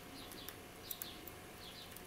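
Faint light clicks of a steel hook pick working the pin stack inside a City R14 euro cylinder during single-pin picking, a few ticks about half a second and one second in. Birds chirp softly in the background throughout.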